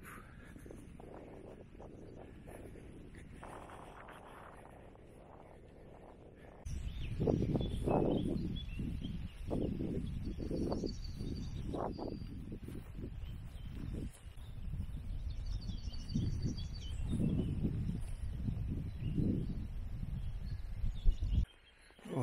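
Strong wind buffeting the microphone in irregular gusts, rising suddenly about a third of the way in after a calmer start and cutting off just before the end. Birds chirp faintly in the background.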